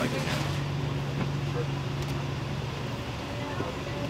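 Street traffic noise with a steady low engine hum that fades out about three seconds in.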